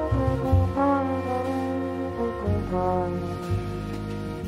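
Jazz ensemble with strings playing, a trombone holding long notes over low bass notes that change about every second.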